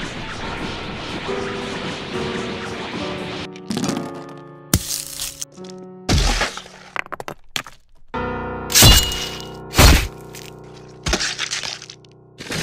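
Dramatic background music laid under fight sound effects: a rushing noise for the first few seconds, then a series of sharp cracking and smashing impacts. The two loudest hits come about a second apart, past the middle.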